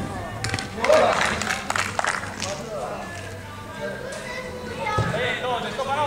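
Players' voices and shouts on a small-sided football pitch, with music playing in the background; the loudest burst of shouting comes about a second in.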